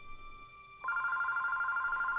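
Cordless home phone ringing: a loud electronic trill, rapidly pulsing, that starts just under a second in.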